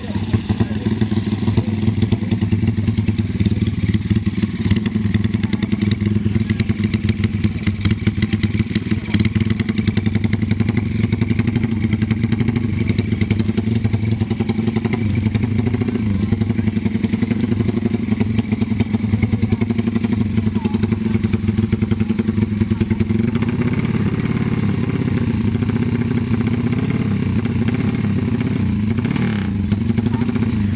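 Modified drag-race motorcycle engine running close by with a steady, fast firing beat, its pitch rising and falling a little in the second half.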